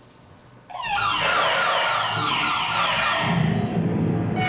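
Electric guitar played through live electronic processing: after a quiet moment, a loud dense sound starts suddenly just under a second in, made of many repeated falling glides, and keeps going.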